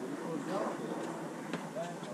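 Indistinct voices talking over a steady background hiss, with no words that can be made out and a few faint ticks.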